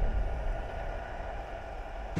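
A low, muffled underwater rumble from a bubble plume, fading slowly.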